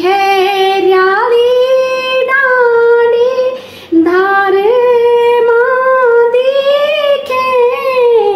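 A woman singing a Garhwali khuded folk song, a song of longing for the maternal home, unaccompanied in long held notes, with a short break for breath just before the middle.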